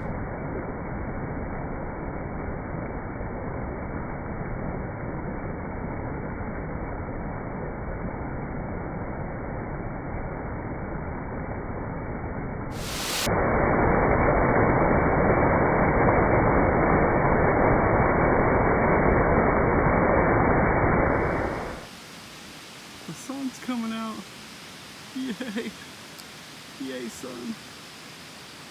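Small woodland creek running high, rushing over rocks and fallen logs in a steady roar of water that grows louder about halfway through. A little over three quarters of the way in it cuts away to a much quieter background with a few short faint sounds.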